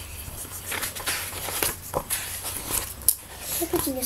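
A paperback picture book being handled close to the microphone: irregular rustles and soft knocks as it is moved and held up, over a low steady hum.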